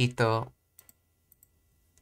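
A short spoken syllable at the start, then a few light computer clicks: two close pairs and one more near the end, as the flashcard is answered and the next card comes up.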